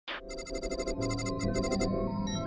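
Rapid electronic beeping in short runs, about a dozen pulses a second, like a sci-fi computer readout, over a low synth drone that comes in about a second in.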